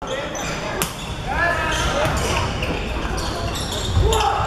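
A volleyball bounced on the hard court floor and then struck hard once, about a second in, as a serve, with shouting voices in an echoing sports hall.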